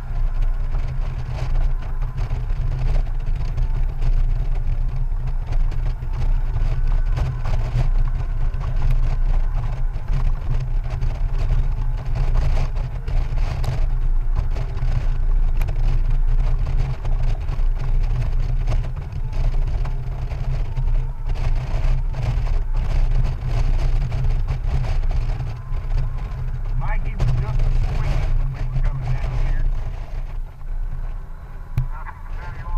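Honda Goldwing GL1800 motorcycle with its flat-six engine, riding steadily at road speed, heard as a heavy, even low rumble with wind noise on the microphone.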